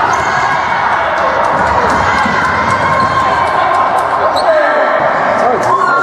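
Indoor basketball game: a ball bouncing and sneakers on the court floor, with a short squeak about four seconds in, under a steady din of many overlapping voices shouting in an echoing sports hall.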